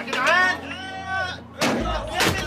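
Brawl: loud yelling voices rising and falling in pitch, then a heavy crash about one and a half seconds in, followed by a low rumble.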